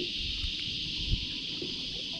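Steady high-pitched drone of an insect chorus, with a low wind rumble on the microphone and a soft low thump about a second in.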